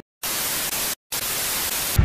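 Television static sound effect: steady hiss in two bursts of about three-quarters of a second each, with a brief dropout between them about a second in.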